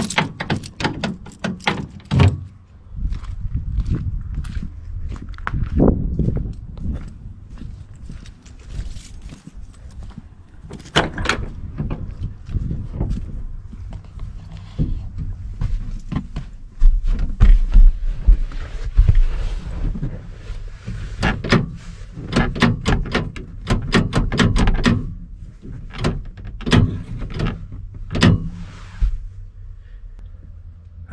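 Keys on a ring jingling and clicking as a key is worked in the stuck driver-door lock of a 1973 GMC truck, which will not unlock, followed by door thunks and knocks of someone getting into the cab. The loudest part is a run of heavy low bumps about two-thirds of the way in.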